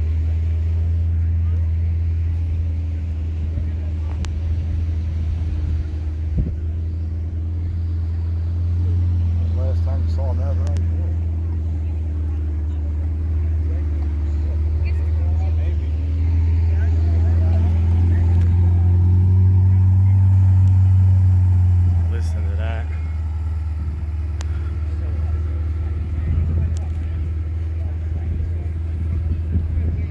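A car engine running steadily at idle, a low even hum that swells louder for several seconds past the middle and then settles back. Faint voices of people talk in the background.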